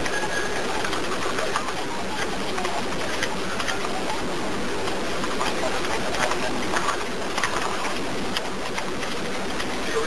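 Recorded 911 call over a telephone line with no one talking: steady line hiss, with faint, indistinct voices and small clicks in the background.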